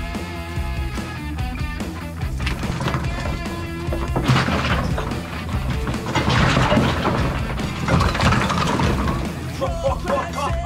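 Background rock music, with a clattering crash of rock chunks breaking from a tunnel wall and tumbling onto rubble as the wall is levered with a steel bar, from about four seconds in until nearly the end.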